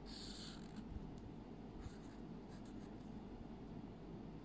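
Marker pen writing on paper: a few short, faint strokes, the first right at the start and more about two to three seconds in, over a low steady hum.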